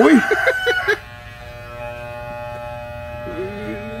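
Corded electric hair clippers buzzing steadily while cutting hair, clear from about a second in once the voices drop. Over the first second a short exclamation is heard with the end of a rooster's crow.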